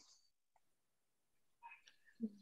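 Near silence, the pause almost blank, with a few faint brief sounds near the end.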